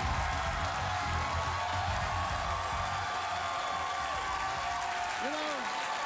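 Studio audience applauding over the house band's walk-on music; the music stops about halfway through while the clapping carries on.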